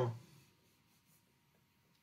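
Faint writing on a board: a short arrow being drawn, the stroke barely above room tone.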